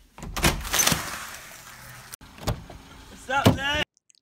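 Car door being opened from inside by its interior handle: the latch clicks, then a steady hiss of noise, with another sharp click a couple of seconds later. A brief voice sounds near the end.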